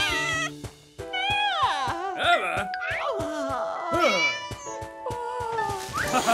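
Cartoon soundtrack: background music with held notes, over which high-pitched, wordless squeaky cries slide up and down in pitch, several times, after a brief lull about a second in.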